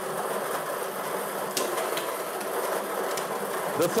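Lottery ball-draw machine running, its numbered balls tumbling in the mixing chamber: a steady rushing rattle with two sharp clicks about a second and a half and two seconds in.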